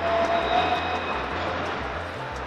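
Steady traffic noise on a city street, with a low rumble that comes and goes and a faint steady tone in the first second.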